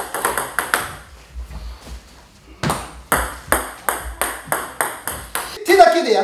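Table tennis ball clicking off the racket and bouncing on the table during backspin serves: a few sharp clicks at first, then after a quieter moment a quick run of sharp clicks, about four a second.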